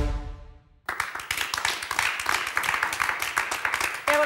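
The last chord of the theme music rings and fades away, then a studio audience breaks into steady applause just under a second in.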